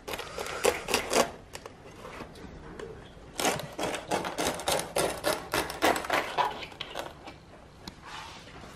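A cleaver cutting through the crisp, crackly skin of a whole roast pig: quick runs of sharp crunching cracks as the blade breaks the crackling, a short run at the start and a longer one from about three and a half seconds to seven.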